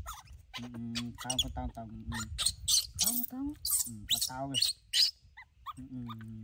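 Water splashing in short bursts as a newborn baby monkey is washed by hand in shallow water, under a man's voice talking.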